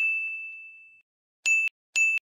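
A bell-like ding sound effect that rings out and fades over about a second, then two short dings about half a second apart near the end, each cut off abruptly; it is added to mark each list number as it pops up.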